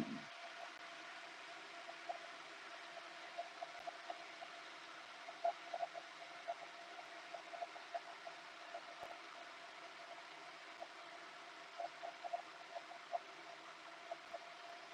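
Quiet room tone: a steady faint hiss with scattered faint ticks.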